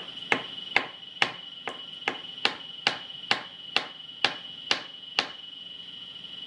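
A crayon tapped hard again and again on paper laid on a wooden table: about a dozen sharp knocks, about two a second, that stop a little after five seconds in.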